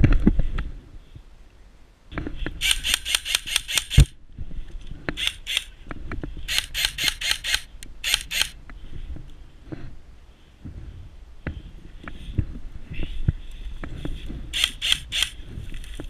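Airsoft rifle firing several quick bursts of sharp clicking shots, about seven a second. A handling knock comes at the start, and a louder one about four seconds in.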